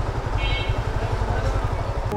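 Motorcycle engine idling with a steady low, rapid pulsing.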